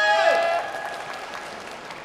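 Applause, with the members on stage clapping, fading steadily away after a girl's amplified voice ends about half a second in.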